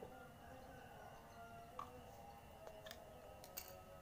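Near silence: faint background with a few light, short clicks.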